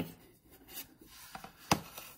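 Faint rubbing and handling of a paper worksheet on a clipboard, with one sharp knock near the end.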